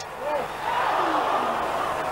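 Football stadium crowd noise swelling about half a second in, the crowd's reaction to a header that goes just wide.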